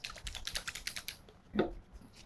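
A quick run of light clicks and rustles from hands handling a small plastic hand-sanitizer bottle and rubbing the sanitizer in, with a brief voice sound near the end.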